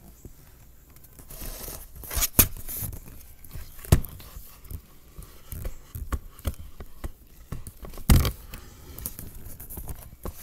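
Handling noise from the recording device being picked up and moved around close to a wooden floor: rubbing and scraping with scattered knocks, the sharpest about two, four and eight seconds in.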